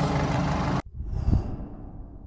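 A Ford Kuga's engine idling steadily while the cooling system bleeds, waiting for the thermostat to open. It cuts off suddenly under a second in, followed by a brief sound effect with a low thump that fades away.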